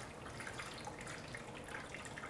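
Faint rustling and small scattered crackles from hands working a plant in its potting mix.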